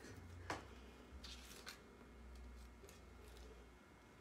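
Near silence: a faint low room hum, with one light click about half a second in and a few soft rustling scrapes a little later, the sounds of hands working a transfer sheet.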